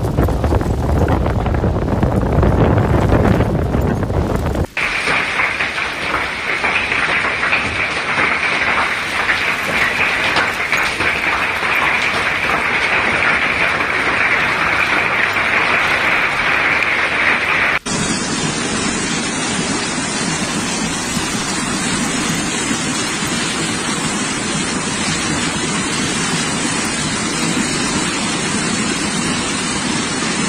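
Storm recordings joined by hard cuts. First, wind buffets the microphone with a deep rumble during a snowstorm. A few seconds in, this gives way to a steady hiss of heavy rain pouring onto a tiled roof, and a little past halfway a cut brings a different heavy downpour.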